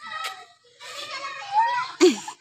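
Children's voices at play, faint and unclear, with one sharp click just after the start.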